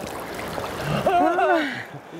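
Shallow river water rushing and splashing over a stony bed, then a man's voice breaks in about a second in.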